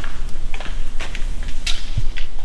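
Light metallic clinks and rattles of an aluminium BMW i8 high-voltage battery cooler being handled and laid down, a few scattered sharp clicks over a steady low hum.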